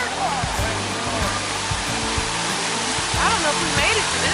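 Steady rush and splash of a small waterfall spilling over rocks into a shallow stream.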